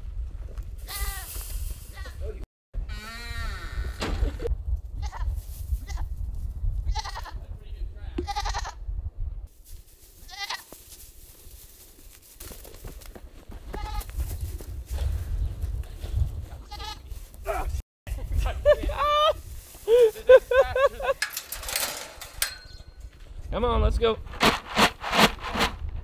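Goats bleating again and again, short wavering calls typical of a nanny goat calling for her loose kid, over a low rumble on the microphone.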